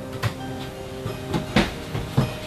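A run of heavy, irregular thumps, about five in two seconds, while held music notes fade out.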